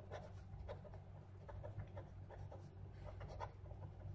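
Pen writing on paper: a run of faint, short scratching strokes as words are written, over a steady low hum.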